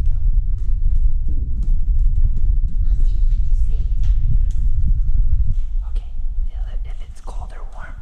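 Low rumble of wind and handling noise on a handheld camera carried at a run, with quick footsteps, dropping away about five and a half seconds in. Soft children's voices follow near the end.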